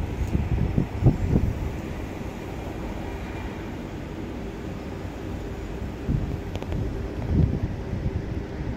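Wind buffeting the microphone: a low rumble that swells in gusts, strongest about a second in and again late on, over a faint steady hum.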